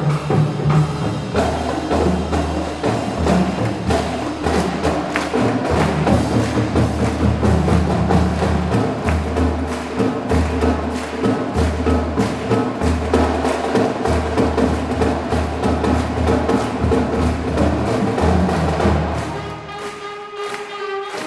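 Marching band of brass, saxophones, sousaphones and marching drums playing, with a steady drum beat under the horns. Near the end the drums drop out.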